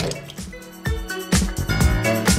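Background music; a regular beat comes in about a second in.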